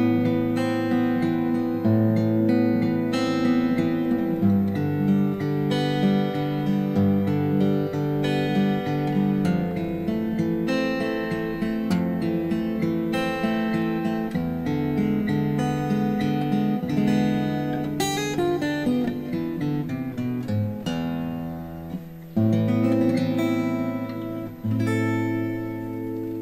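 Acoustic guitar fingerpicked in a slow arpeggio pattern through a melancholic minor-key chord progression, the bass note changing every two to three seconds. The playing briefly drops near the end, then picks up again.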